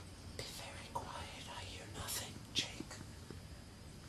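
Faint whispering, with a few short hissed sibilants scattered through it.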